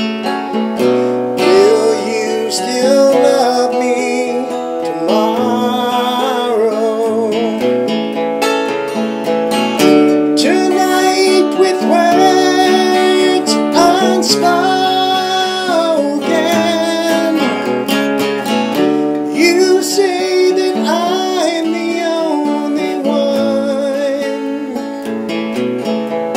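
An acoustic guitar played at a slow tempo with a man singing a drawn-out melody over it.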